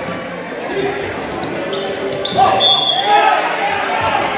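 Futsal being played on a gymnasium's wooden court: the ball thuds on the floor, with brief high squeaks from shoes on the court, while players and spectators shout and chatter in the echoing hall.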